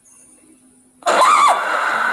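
Quiet for about a second, then a sudden, loud, high-pitched scream of fright from a startled woman, its pitch swooping up and down.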